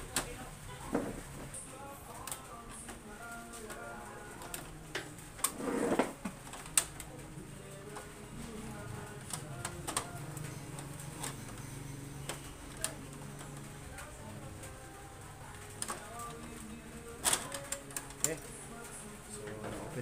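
Scattered sharp plastic clicks and knocks from an Epson L3210 ink-tank printer's plastic casing and scanner unit being handled and unlatched to open it up. The loudest clicks come about six seconds in and again near seventeen seconds.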